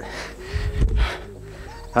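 A man breathes out close to a handheld camera's microphone. About half a second to a second in there is a low rumble of handling noise as the camera is turned around.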